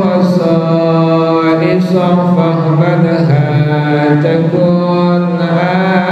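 A man chanting devotional verses into a handheld microphone in a slow melodic style, holding long notes that slide from one pitch to the next.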